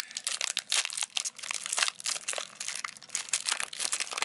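Foil trading-card pack wrapper being torn open and peeled back by hand, a run of irregular crinkles and short tearing crackles.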